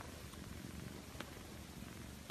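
Calico Persian-type cat purring steadily, with a few faint clicks.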